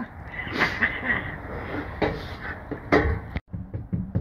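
Knocks and scrapes of work on a camper van roof around a cut-out roof opening, with a sharper knock about three seconds in; the sound drops out briefly just after it.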